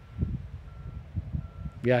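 Faint electronic beeping: a single high steady tone sounding three times, about two thirds of a second apart, over a low rumble with short low thumps. A man's voice comes in right at the end.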